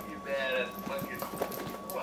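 A few short plastic clicks and knocks from the nozzle of an aerosol whipped-cream can being twisted and worked by hand, as she tries to fix a faulty nozzle, over a voice.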